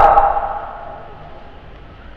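A man's voice through a microphone and loudspeakers, holding one long drawn-out note in a melodic preaching style that fades away over the first second. A short pause with only faint background follows.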